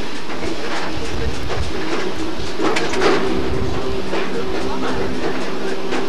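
Running rumble and clatter of a moving tour train, heard from on board. A steady hum comes in about halfway through, with a short burst of knocking just before it.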